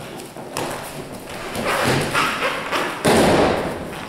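A person's body landing on a foam jigsaw mat with a loud thud about three seconds in: the uke's breakfall from a kotegaeshi wrist-turn throw. Scuffling of moving feet and clothing builds before it.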